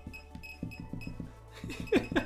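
A laser projection keyboard's short, high electronic beeps, one for each key press it registers, coming in an uneven string as letters are typed, over background music. A short vocal sound near the end.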